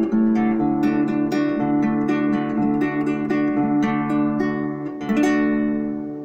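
Solo acoustic guitar playing the closing instrumental passage of a song: picked notes, roughly two a second, over held chords. About five seconds in comes a strong final chord, left ringing and fading.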